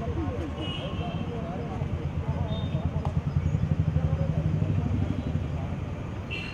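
A vehicle engine running close by, swelling louder for a couple of seconds midway, under indistinct chatter of several voices.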